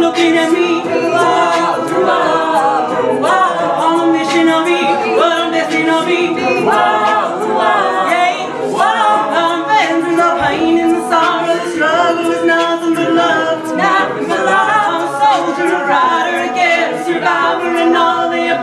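Mixed-voice a cappella group singing, with a steady beatboxed vocal-percussion beat under a female lead voice.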